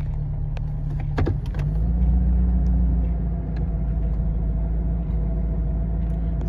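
1978 Mercedes-Benz 450 SL's 4.5-litre V8 idling smoothly at normal running temperature, heard from inside the cabin. About a second in there are a few clicks as the automatic is shifted up into park, after which the idle drone deepens and grows slightly louder.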